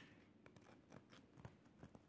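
Near silence with a few faint, scattered clicks and light rustles of small objects being handled.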